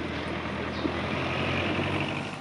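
A heavy vehicle's engine running steadily, a low hum with a higher whine joining in about halfway through.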